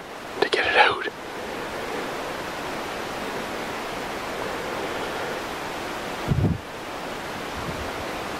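Steady wind rushing through spruce trees, an even hiss with no pattern, and a short low buffet of wind on the microphone about six seconds in.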